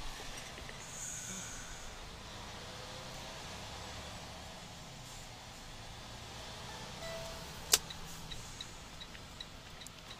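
Volvo VNL 730 semi truck heard from inside the cab, its engine running low and steady as it rolls slowly. About three-quarters through there is one sharp click, followed by faint, evenly spaced ticks near the end.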